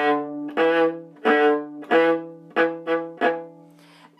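A viola bowing the bottom note of the repeated triple-stop chords: about seven strokes on much the same low pitch, the last few shorter and quicker, then dying away near the end.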